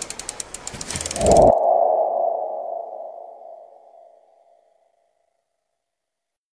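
Logo-animation sound effect: a quick run of sharp ticks, then a single ringing ping that fades away over about three seconds.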